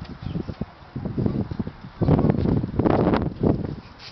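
Wind buffeting the camera microphone in irregular gusts, mostly a low rumble, with the strongest gust about halfway through.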